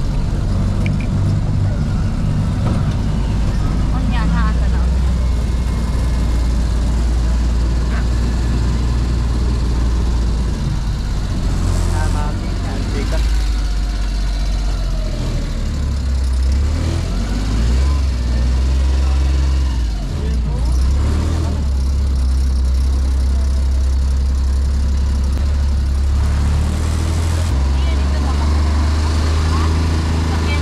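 Open-sided zoo shuttle cart on the move: a steady low rumble from the ride, with indistinct voices over it.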